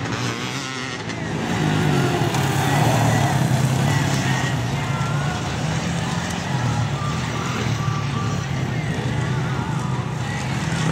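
Off-road motorcycle engines running and revving, the pitch rising and falling with the throttle; the sound grows louder over the first few seconds as a bike comes closer.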